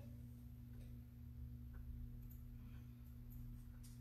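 Low steady electrical hum with a few faint, scattered clicks.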